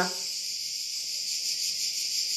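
A steady high-pitched hiss with no other sound in it; a voice trails off right at the start.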